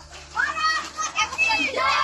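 Children's high-pitched voices calling out and chattering, starting about half a second in.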